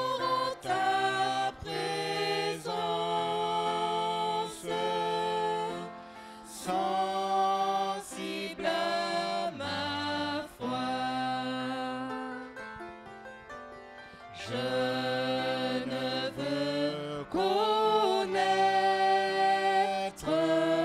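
Three voices singing a slow hymn into microphones, in phrases of long held notes, with a brief lull a little past halfway.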